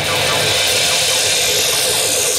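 Drum kit played live over a backing track, with cymbals ringing in a dense, steady wash. A thin falling sweep begins near the end.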